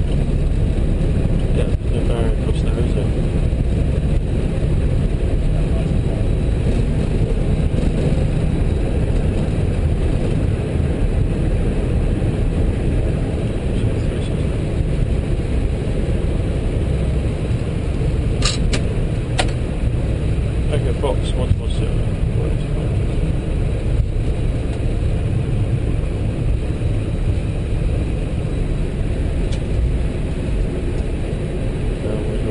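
Steady low cockpit rumble of an Airbus A320 rolling out on the runway just after touchdown, easing slightly as the aircraft slows. A few sharp clicks come a little past halfway.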